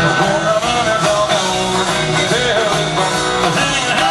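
Live country band playing at full volume, electric guitars to the fore over bass and drums.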